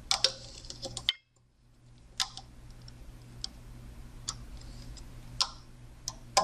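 Loom hook and rubber bands clicking against the plastic pegs of a Rainbow Loom as the bands are looped, a handful of separate sharp clicks over a low steady hum. A brief dead silence comes about a second in.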